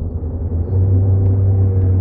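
A steady low humming drone with no words over it. A fainter sustained higher tone joins it about a second in.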